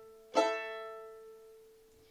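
Violin played pizzicato: a string plucked once about half a second in, ringing and dying away over about a second and a half, after the fading ring of the previous pluck.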